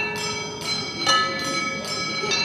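Drinking glasses and glass dishes struck with sticks, giving three bell-like ringing notes, the loudest about a second in, each left to ring on.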